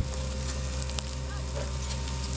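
Dry grass burning with many small sharp crackles, over the steady low hum of a fire truck's engine running.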